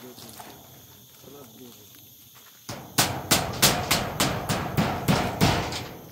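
Rapid hammer blows, about three a second, that start about three seconds in and stay loud and even. Faint voices come before them.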